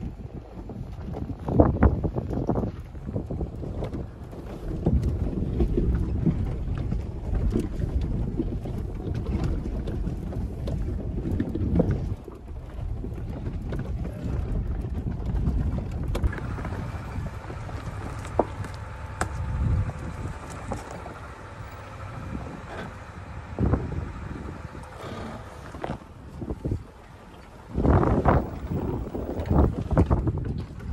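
Heard from inside the cab, a Ford Super Duty pickup on 37-inch tyres crawls down a rocky trail. A low rumble of engine and tyres is broken by knocks and jolts from the rough ground, with a louder burst of knocks near the end.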